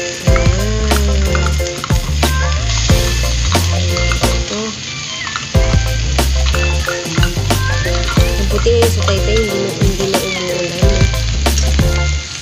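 Canned corned beef sizzling as it is spooned into a hot frying pan, with repeated sharp clicks of the metal spoon scraping the can and the pan. Background music with a stepping bass line plays under it.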